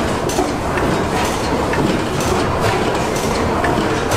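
A 1925 Otto 175 hp natural-gas engine running, with a steady, rhythmic mechanical clatter from its valve gear and crank as its big flywheels turn.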